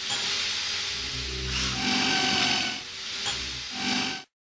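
Channel intro sound effect: a long hissing swish with two low rumbling swells and a few faint held tones under it.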